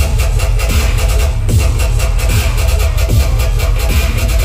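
Loud dubstep from a live DJ set over a concert sound system, with a heavy, continuous bass and a steady beat, picked up on a phone's microphone.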